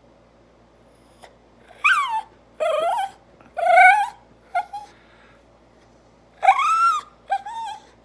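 Small shaggy dog vocalizing in a series of about six high, whining calls that slide up and down in pitch, in two bursts, begging its owner for bacon and attention.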